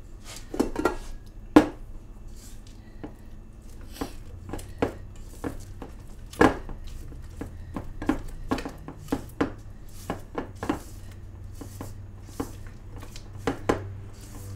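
Spatula stirring thick cookie dough by hand in a stainless steel mixing bowl, knocking and scraping irregularly against the bowl's side.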